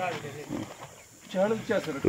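Quieter speech: one voice trails off at the start, then another voice speaks briefly and softly in the second half.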